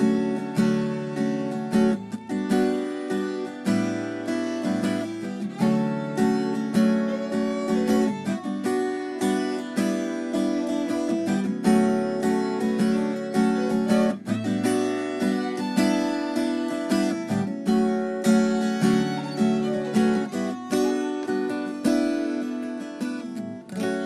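Acoustic guitar playing an instrumental introduction, chords picked and strummed in a steady rhythm before the singing comes in.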